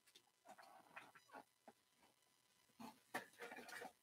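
Near silence with a few faint clicks and rustles of cards and a box being handled on a tabletop, a little busier near the end.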